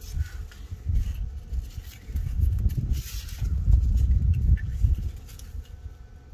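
Uneven low rumble of wind buffeting the microphone, with a few faint clicks as the metal fuel-return fitting and its spring are handled against the FASS pump block.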